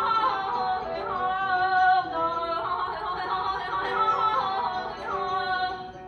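Female voice singing Persian classical avaz in the mode of Abu Ata, in ornamented, wavering melodic lines that dip briefly near the end before resuming.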